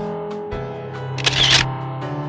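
Background music with steady sustained notes, broken a little past halfway by a short camera-shutter click sound.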